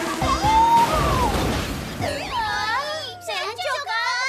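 Cartoon crash sound effect as a scooter smashes into a bread stall, a burst of noise in the first two seconds. High-pitched animated voices then cry out in alarm, over background music.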